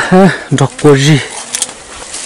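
A person speaking in a few short phrases during the first second or so, then only low background.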